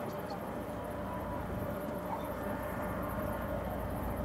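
Steady machinery hum and low rumble from a Disney cruise ship passing close by, with one constant mid-pitched tone running through it; the rumble grows a little near the end.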